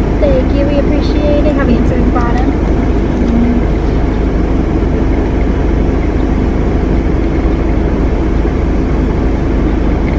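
Steady hum of a car idling, heard inside the cabin, with faint voices in the first few seconds.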